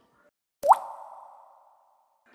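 A single edited-in pop sound effect, a quick upward-swooping blip with a short hissing tail that fades away.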